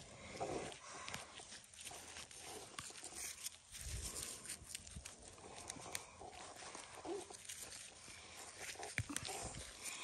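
Faint, irregular rustling and scraping of loose soil and dry straw mulch as gloved hands dig sweet potatoes out of the ground, with small scattered clicks.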